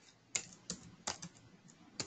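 Computer keyboard keys tapped one at a time: several separate keystrokes, a few tenths of a second apart.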